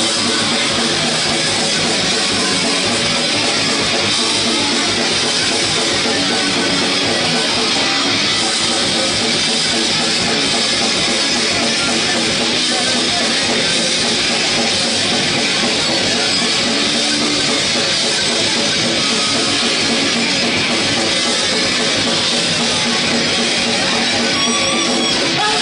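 A metal band playing live at full volume: electric guitars and a drum kit in a dense, unbroken wall of sound, heard from the crowd.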